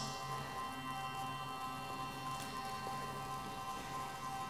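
Ambient electronic drone music: several steady held tones under a faint crackling texture.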